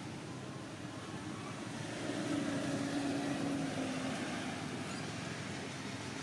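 A distant engine hum over steady outdoor background noise. It swells to its loudest about two seconds in and fades again after about four seconds.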